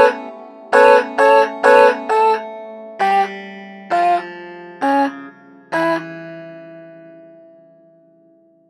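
Synth clavinet (FL Studio Mobile's Morphine clavinet) playing short, plucky chord stabs in a quick pattern. Then come four slower stabs, each lower in pitch, and the last one rings out and fades away.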